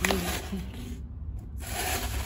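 Tissue paper and a cardboard shoebox rustling as a sandal is handled and lifted out. There are two rustles: one right at the start and another about one and a half seconds in.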